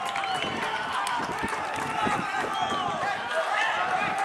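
Several voices calling and shouting indistinctly across an outdoor football pitch during play, over open-air background noise.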